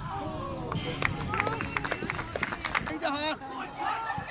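Footballers shouting and calling to each other on the pitch, over running footsteps and the odd touch of the ball.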